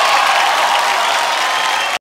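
Studio audience and judges applauding, a steady, even clapping that cuts off suddenly at the very end.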